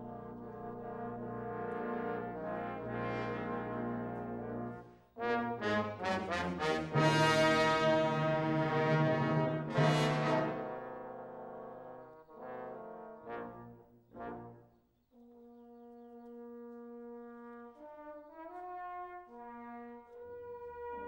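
Trombone choir with tuba playing slow, sustained chords. The sound swells to a loud climax about halfway through, then drops to a soft held chord with a moving inner voice near the end.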